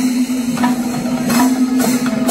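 Kerala temple percussion ensemble: hand drums played with bare hands and clashing small cymbals over a steady sustained tone. The cymbal clashes ease off in the first half and come back twice near the end.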